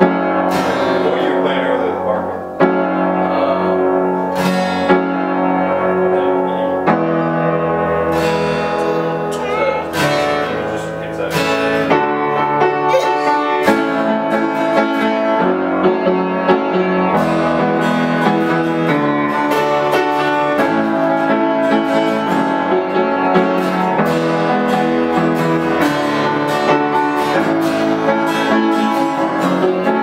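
Acoustic guitar strummed together with an upright piano, the two playing a run of chords that change every second or two.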